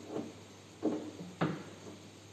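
Three dull knocks about half a second apart, the last the loudest, as a washing machine's cabinet is handled and fitted during a body replacement.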